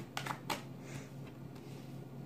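A deck of tarot cards being shuffled by hand: a few crisp card clicks in the first half second, then fainter, sparser ticks of the cards.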